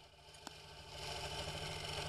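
An engine idling with a steady, even pulse, faint at first and louder from about a second in. There is a single light click about half a second in.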